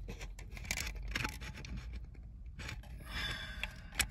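Faint scraping and clicking of a crimped brass spade connector being worked onto the horn button's spade tab behind a steering wheel, with a few sharper clicks.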